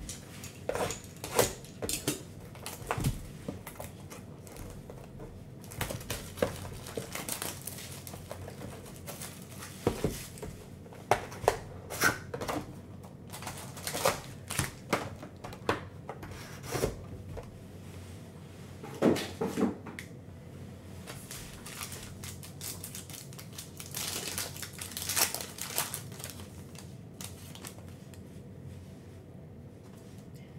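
Irregular crinkling, crackling and tearing of plastic shrink wrap being pulled off a sealed trading-card box, then of a card pack being opened by hand.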